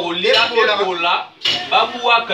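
A man's voice singing a repeated refrain, loud and held on long notes, breaking off briefly about a second and a half in.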